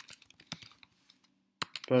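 Typing on a computer keyboard: separate keystroke clicks, with a short pause a little past halfway.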